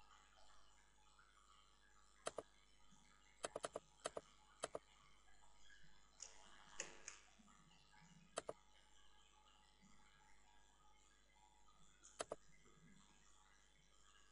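Near silence broken by about a dozen sharp computer mouse clicks, some in quick pairs.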